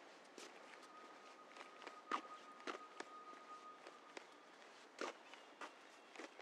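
Footsteps walking on a paved railway platform, roughly two steps a second, with uneven strikes. A faint, thin steady tone sounds underneath for a few seconds in the middle.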